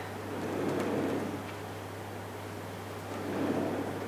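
Soft rustling and handling sounds from foliage stems being worked into a hanging flower arrangement, swelling twice, over a steady low hum.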